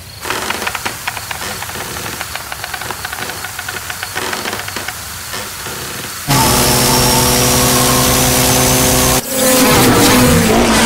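Engine-like sound effects: rapid clicking for the first six seconds, then a loud, steady motor drone that starts suddenly. It breaks off about nine seconds in and comes back at once as an engine whose pitch bends up and down.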